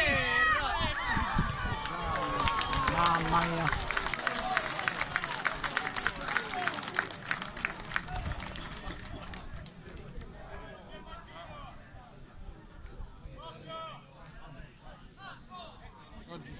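Shouting voices of players and spectators at an outdoor football match, loudest in the first few seconds. A quick run of sharp clicks follows for several seconds, then only fainter, scattered calls.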